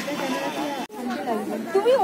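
People talking: several voices in casual chatter, with a sudden, very short dropout in the sound about halfway through.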